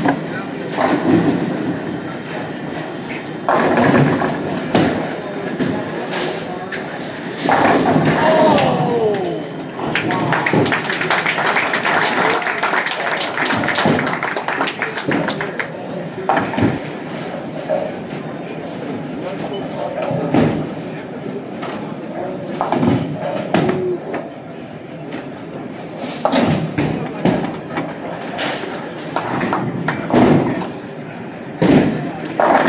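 Busy bowling-alley noise: bowling balls thudding and pins clattering on the lanes, with people's voices echoing in the hall. It gets louder and busier in the middle.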